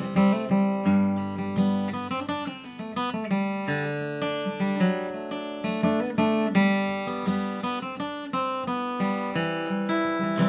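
Taylor 110E steel-string acoustic guitar with Martin medium-gauge strings, flatpicked with a Blue Chip pick: a quick bluegrass-style run of single notes mixed with strummed chords, bright and clean.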